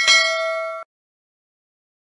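A bell-like notification ding sound effect as the bell icon is tapped: one ring with bright overtones that cuts off suddenly under a second in.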